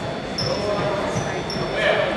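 A basketball being dribbled on a hardwood gym floor, with repeated low bounces under crowd chatter echoing in the gym. A couple of short, high sneaker squeaks sound about a third of the way in and again past the middle.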